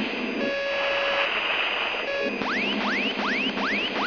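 Electronic tones over a hissing cockpit radio channel: a steady beep held just under a second, a short repeat of it, then from about halfway a fast run of rising whoops, about three a second.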